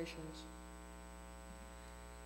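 Steady electrical mains hum with a stack of even, unchanging tones. The last syllable of a boy's reading voice trails off in the first half-second.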